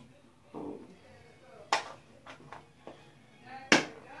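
Two sharp plastic clacks about two seconds apart, the second the louder, with a few light taps between: a mouthguard case being handled and snapped.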